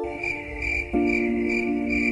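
Cricket chirping in a regular high chirp about three times a second, over background music holding a sustained chord that shifts about a second in.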